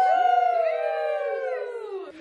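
Several women's voices together in one long, drawn-out cheer during a toast, slowly falling in pitch.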